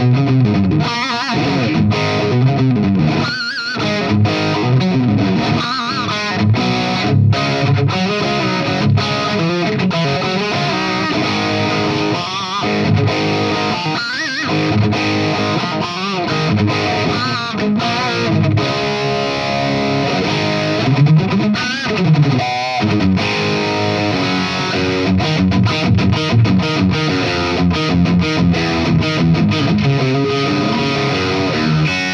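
Distorted electric guitar playing riffs and chords, with wavering bent notes in places; the made-in-Japan 1990s Washburn N4 with its Floyd Rose tremolo bridge, before the FU-Tone upgrades.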